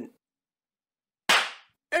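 A single short, sharp burst of hiss-like noise about a second in, dying away within half a second.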